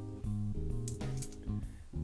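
Background lounge music with guitar. About a second in there are a couple of light clicks, like copper pennies clinking in a hand.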